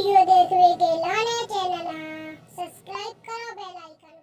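A high-pitched, child-like voice singing a short chant, breaking into shorter phrases in the last second and fading out.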